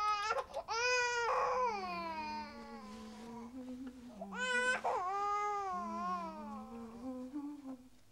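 A baby crying in two long wails, each about three seconds and falling in pitch at the end. Under the wails, from about a second and a half in, an adult hums one low note that shifts slowly.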